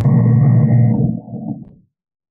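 A man's voice holding a long, level-pitched 'ummm' hesitation sound, trailing off well before two seconds in.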